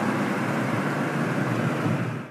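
Steady jet engine noise of an airliner in flight overhead.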